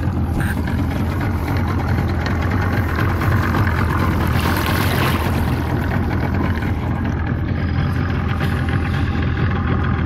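Boat's outboard motor running steadily at low trolling speed, a low even drone, with water rushing along the hull. The hiss swells briefly about halfway through.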